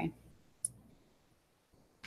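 A few faint clicks at a computer desk: a short muffled knock at the start and one sharp, high click about two-thirds of a second in.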